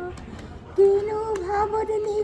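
A high voice singing long held notes, dropping out briefly near the start and then holding a slightly higher note from about a second in, with scattered hand claps.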